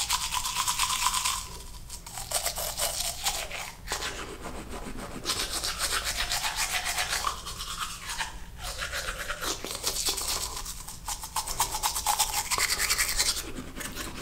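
Manual toothbrush scrubbing teeth with rapid back-and-forth strokes, in several stretches broken by brief pauses.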